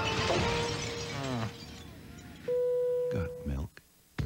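A crash and clatter that dies away over the first second and a half, then a steady beep lasting about a second, before the sound cuts out near the end.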